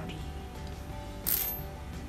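A steel yarn needle set down on a wooden tabletop, one short bright metallic clink about a second and a quarter in, over steady background music.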